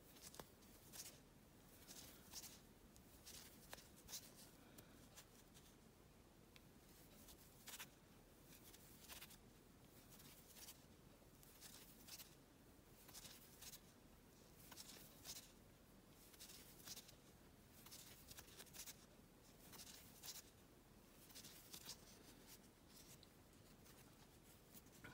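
Faint, soft rasps of a crochet hook drawing yarn through single crochet stitches, one roughly every second and a half.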